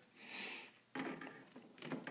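Faint handling sounds of metal kitchen tongs in a saucepan of hot water: a short hiss near the start, then irregular light clicks and scrapes as the tongs grip a GPS unit in the water.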